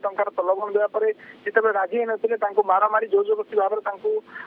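A man speaking over a telephone line, his voice thin and without low end.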